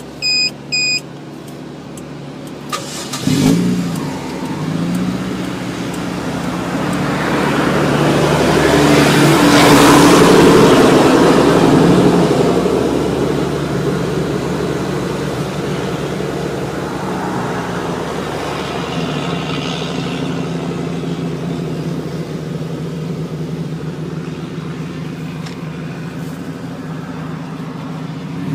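Two short high electronic beeps, then a car engine cranks and starts about three seconds in. Its sound builds over several seconds to a peak about ten seconds in, then settles to a steady idle.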